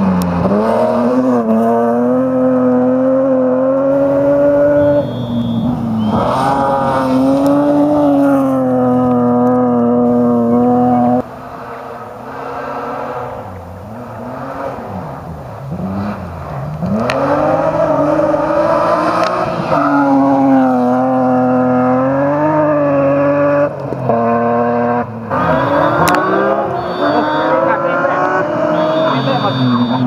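A BMW E36 M3 rally car's straight-six engine at high revs under full throttle, climbing in pitch and dropping at each gear change as it passes. It is quieter and more distant for a few seconds in the middle.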